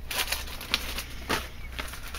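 Plastic-sleeved sticker packs and paper rustling and crinkling as a hand rummages through a storage bin, with several short crackles and clicks.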